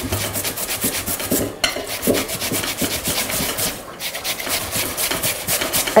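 Raw potatoes being grated by hand on the fine holes of metal graters: two graters at once, a fast run of rasping strokes with a couple of brief pauses.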